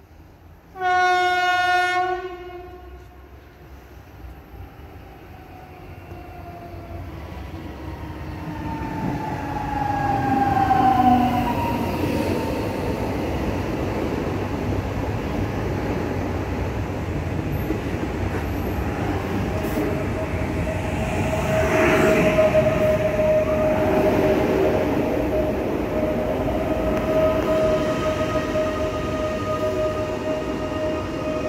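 A PKP Intercity passenger train sounds one long horn blast on its approach, then comes up and passes close by. Its rolling rail noise grows loud, with a falling whine as it draws level. Later a steady high whine runs over the rumble of the train.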